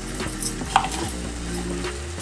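Sponge gourd pieces frying in a nonstick kadai, with a steady low sizzle and a few light clicks of utensils against the pan, one sharper click near the middle.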